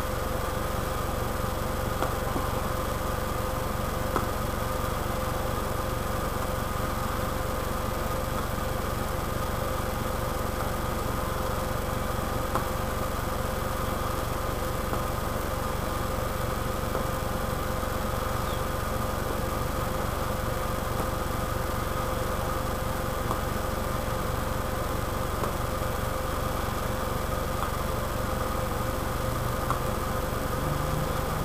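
A steady low mechanical hum with faint constant whining tones above it, unchanging throughout, broken only by a few faint ticks.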